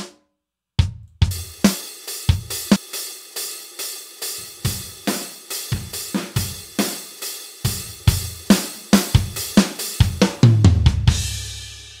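Sampled drum kit from XLN Audio's Addictive Drums playing back as exported audio stems: a steady beat of kick, snare and hi-hat at 140 BPM. It starts about a second in after a short gap and ends near the end on a cymbal that rings out and fades.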